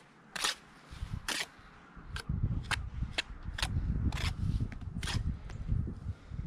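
A steel brick trowel scraping and clicking against a brick and the mortar as mortar is buttered onto the brick held in the hand. It makes a run of sharp, uneven clicks and scrapes, roughly two a second.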